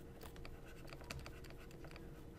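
Faint, irregular ticking and scratching of a stylus writing on a pen tablet, over a low steady hum.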